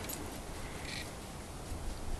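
Quiet outdoor ambience with a low rumble and a single faint, short animal call just before a second in.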